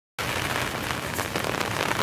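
Steady rain, an even hiss that starts suddenly just after the beginning.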